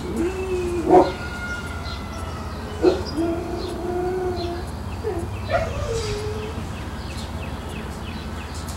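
An animal's long, held calls, three in a row, each starting sharply and holding a steady pitch for a second or more, the last one falling in pitch.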